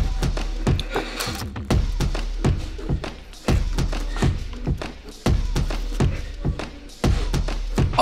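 Background music with a steady beat of sharp percussive hits over a low bass.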